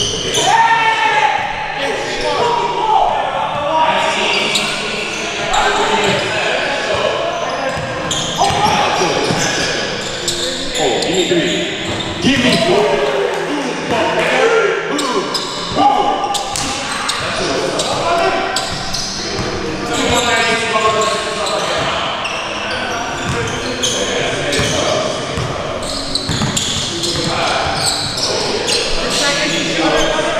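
Basketball bouncing on a hardwood gym floor during play, with players' voices calling out almost continuously across a large gym.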